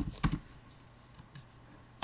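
Computer keyboard typing: a quick run of keystrokes at the start, then a few fainter key taps.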